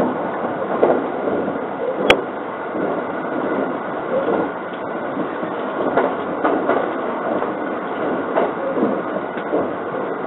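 Interior running noise of a JR 681 series limited express electric train: a steady rumble of wheels on rail with scattered light clicks, and one sharp click about two seconds in.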